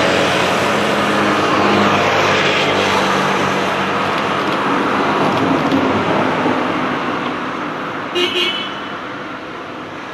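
Motor scooter passing close and riding away, its engine noise fading steadily. A brief high-pitched sound about eight seconds in.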